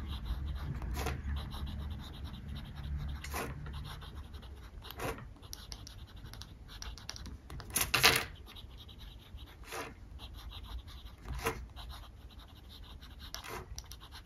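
Cross Aventura fountain pen's nib writing cursive on paper: a faint, soft scratching, broken by short sharper strokes every second or two, the loudest about eight seconds in.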